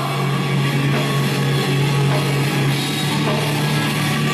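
Loud rock instrumental passage with drum kit and guitar over a steady low bass note, with no singing.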